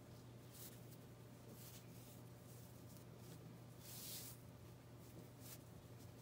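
Near silence: faint rustles of thick cotton macrame cord being pulled and tightened into a square knot, the plainest about four seconds in, over a steady low hum.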